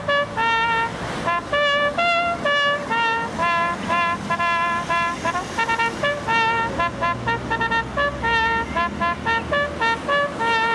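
Solo trumpet playing a slow melody of held and short notes, with road traffic running underneath.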